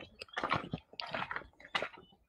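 Footsteps on a dry dirt path, a handful of short, irregular scuffs.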